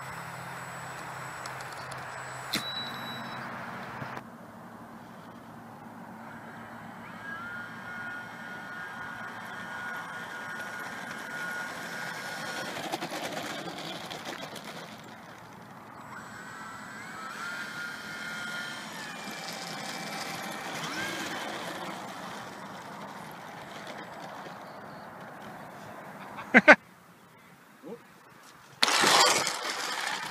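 Radio-controlled model airplane motors and propellers whining, the pitch rising and falling with the throttle, over several cuts. A single sharp crash impact comes about 27 seconds in, and a loud burst of noise near the end.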